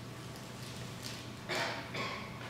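Hall room tone with a steady hum and quiet audience rustle, and a short, louder noisy burst about one and a half seconds in.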